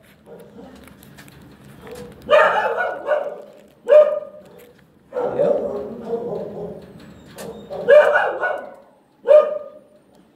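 A dog barking about six times at irregular intervals, some barks short and sharp, a couple drawn out into longer yelping calls.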